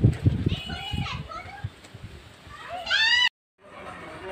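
Children's voices calling outdoors, ending in one loud, high, drawn-out call about three seconds in that cuts off suddenly. Low thumping handling noise on the microphone in the first second.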